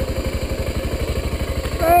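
Motorcycle engine idling with a steady, rapid pulsing beat. A short exclaimed voice comes in right at the end.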